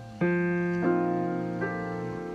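Solo jazz piano playing a slow ballad: a full chord struck just after the start and left to ring, with more notes added about a second in and again near the end.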